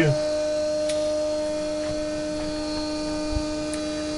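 Pulse motor-generator with a 24-pole rotor running steadily at about 1500 RPM under a 3-watt load, giving a steady electrical hum.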